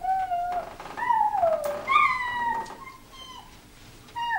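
Four high-pitched, wavering cries. The first is fairly level, the second and third are longer and slide down in pitch, and the last one, about three seconds in, is short.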